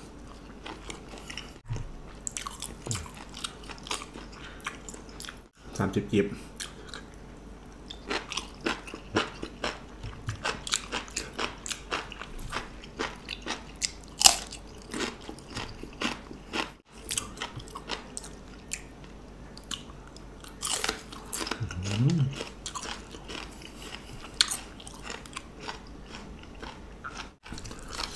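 Close chewing and crisp crunching of raw food, with a sharp crunchy bite into a fresh cucumber about halfway through, followed by more crunching as it is chewed.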